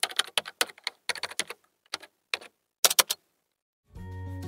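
Typing sound effect: an uneven run of keystroke clicks, the last few the loudest, stopping a little after three seconds in.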